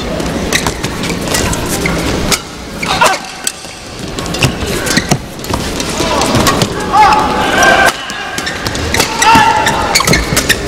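A badminton doubles rally: sharp racket strikes on the shuttlecock at irregular intervals over the steady noise of a crowd in the hall, with voices rising in the second half.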